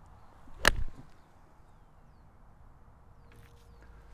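Golf iron striking a ball off grass: a brief swish of the downswing leading into one sharp, crisp strike about two-thirds of a second in, a clean, well-struck shot.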